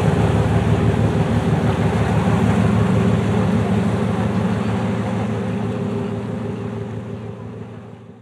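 Boat engine running steadily with a low, rapid pulsing, fading away near the end.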